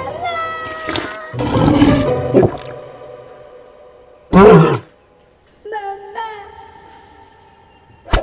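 Cartoon soundtrack: music and comic sound effects, with a short, loud animal-like cry about four and a half seconds in and held music notes after it.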